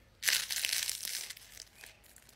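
A loud crunch of a bite into crispy fried food about a quarter second in, followed by a second of crunchy chewing that fades into a few smaller crunches.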